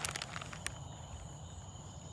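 A night insect chorus: a steady, high trilling of many bugs at two pitches. A few light clicks sound in the first second.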